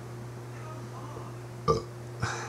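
A single brief vocal sound from the man's mouth or throat near the end, short and abrupt, over a steady low electrical hum.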